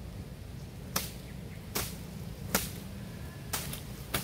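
A bundle of dry coconut-palm leaflets swung overhead and whipped down onto sawn timber planks: four sharp swishing slaps, roughly one a second.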